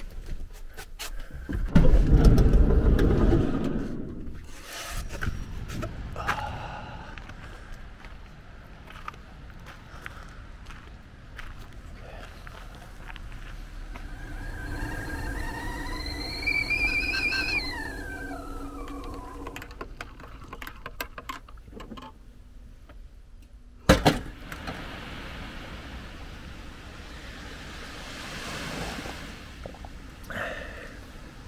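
Stainless stovetop whistling kettle on a gas burner whistling, its pitch climbing for a few seconds and then sliding down as it dies away. Before it comes a loud rush of noise, and after it a single sharp knock.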